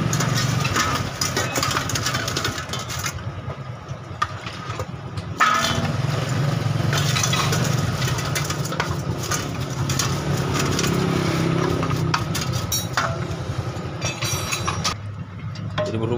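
A steady low engine hum, with scattered rubbing and clicking from a rag wiping down an aluminium scooter CVT cover with petrol, and one sharp knock about five seconds in.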